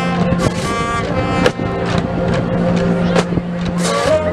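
Marching band playing, with held notes from the winds over sharp percussion hits.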